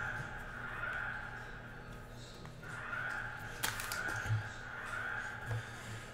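An alarm sounding faintly, a harsh high tone that comes and goes, with a sharp click about three and a half seconds in.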